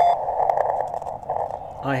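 Steady receiver hiss from a YouKits HB-1B QRP CW transceiver, narrowed to a band around the CW listening pitch by its filter, with a short beep at the very start.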